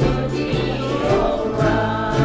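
Live ukulele band: several ukuleles strumming in a steady rhythm over a double bass line, with a group of voices singing together.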